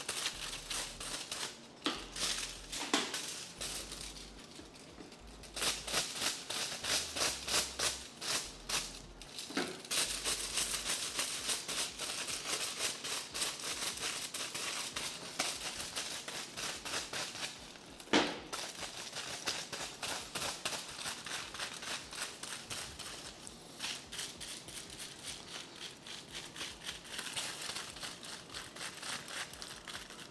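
Hair-colouring brush stroking lightener paste onto strands laid over aluminium foil: rapid, repeated brushing strokes with crinkling of the foil. A single sharp click stands out about eighteen seconds in.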